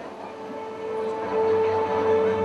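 Background music for the stage scene: one long held note, steady in pitch, swelling louder about a second in.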